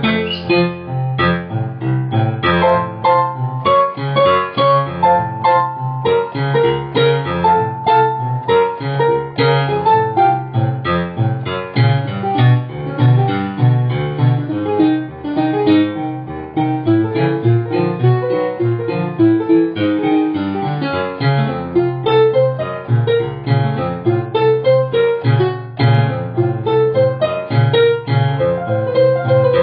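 Piano music playing steadily, a melody over a low accompaniment.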